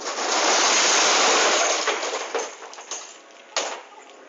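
Stacked plastic crates of glass bottles toppling out of a van onto pavement: a loud crash of smashing glass and clattering crates lasting about two seconds, tailing off into scattered clinks, with one more sharp clatter near the end.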